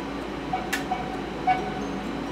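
Room air conditioner running, a steady noise with a faint hum.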